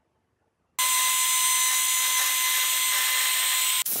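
Trim router running and cutting wood along a straightedge guide: a loud, steady high whine over cutting noise that starts suddenly about a second in and breaks up briefly near the end.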